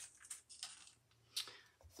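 Faint handling sounds of paint supplies on a work table: a few soft taps and one sharp click about one and a half seconds in.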